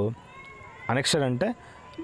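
Speech only: a man's voice speaks a short word or two about a second in. A faint steady tone sits in the background during the pauses.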